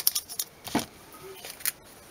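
Small clicks and crackles of hands folding a strip of clear adhesive tape, clustered in the first second.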